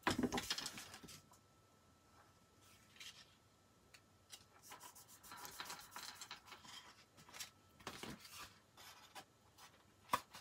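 Black cardstock strip rubbed, pressed and folded by hand, paper sliding on a wooden tabletop. A cluster of soft scraping strokes comes in the first second, then fainter scattered rustles.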